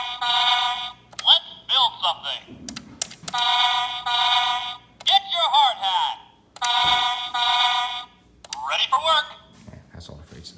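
Toy State CAT Machines toy bulldozer's electronic sound unit playing its song through its small built-in speaker, thin and tinny: three held electronic tones, each about a second and a half long, alternating with short recorded voice lines.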